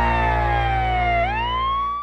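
Segment intro music ending on a held chord, with a high pitched tone gliding slowly down, then sweeping back up a little past halfway before the music cuts off.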